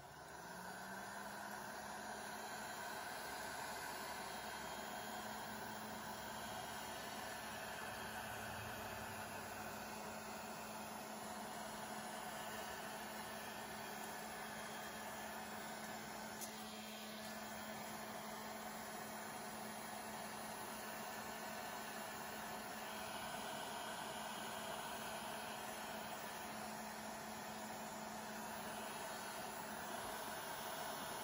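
Handheld electric heat gun coming up to speed at the start, then running steadily: an even rush of blown air over a low motor hum.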